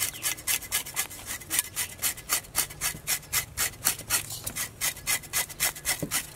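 Knife blade scraping the scales off a whole raw fish in a metal basin, in quick, even strokes, about four a second.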